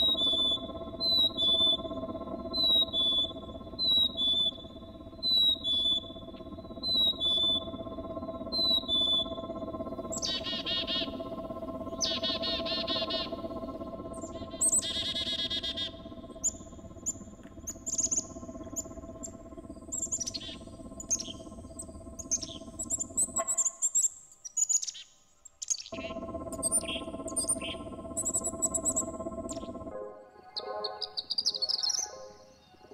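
Black-capped chickadee's two-note whistled "fee-bee" song, a higher note then a lower one, repeated about every second and a half, followed by buzzy calls and then a run of quick, high chirping notes. A steady ambient drone runs underneath and drops out briefly near the end.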